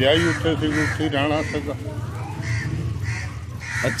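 A bird cawing several times, harsh crow-like calls, over a man talking in the first second or so.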